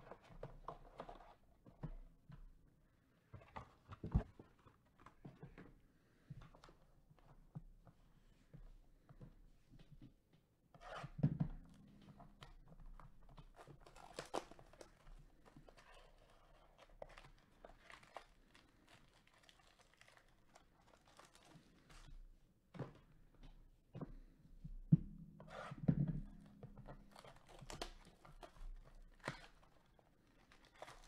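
Cellophane wrapper on a trading-card box being torn and crinkled by hand, in intermittent crackles, with cardboard boxes handled and a few louder knocks.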